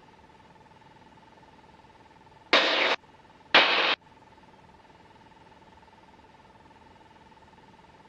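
Aircraft headset intercom audio: a faint steady tone, broken twice, at about two and a half and three and a half seconds in, by half-second bursts of cockpit noise that start and stop abruptly as a microphone opens and closes.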